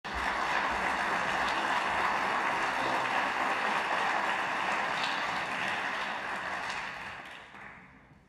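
Concert-hall audience applauding as a performer walks on stage: steady massed clapping that dies away near the end.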